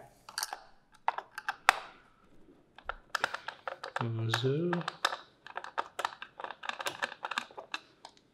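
A run of small, sharp clicks and taps, plastic and metal, as a screwdriver undoes the screw on top of the plastic cap of a Condor MDR5 air-compressor pressure switch and the cap is handled. The clicks come faster in the second half. A brief voice-like hum comes about four seconds in.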